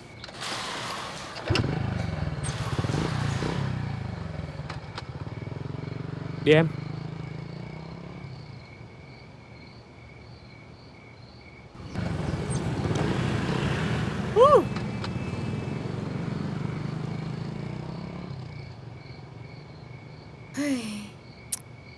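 Small motorbike engines starting and running as a group rides off. The engine sound comes in suddenly about a second and a half in, fades, then swells again about twelve seconds in and slowly dies away. Two short loud yells cut through, one in each swell, over a steady faint chirping of insects.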